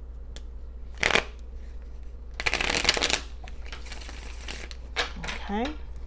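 A deck of tarot cards being shuffled by hand: a short burst of card noise about a second in, then a longer shuffle lasting under a second around two and a half seconds in.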